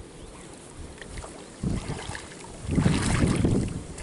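Lake water splashing and sloshing as a man is dipped under and lifted back out in a full-immersion baptism. It is quiet at first, with a short splash a little before two seconds in and the loudest splashing near the end as he comes up out of the water.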